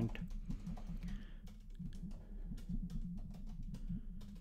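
Typing on a computer keyboard: a steady run of quick keystrokes.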